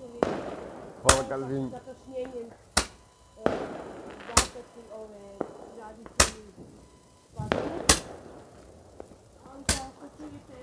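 New Year's fireworks going off: six sharp bangs, evenly spaced about a second and a half to two seconds apart, with voices heard between them.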